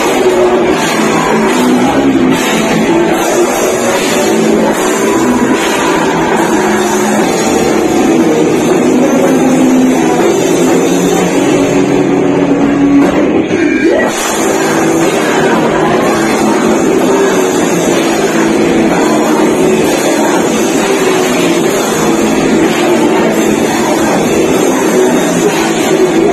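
Heavy metal band playing live and loud: electric guitars, bass and drums together. About halfway through there is a brief break with a rising guitar slide before the band comes back in.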